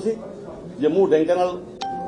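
A single electronic beep: a click, then one steady tone held for about a second, coming in near the end after a short stretch of a man's voice.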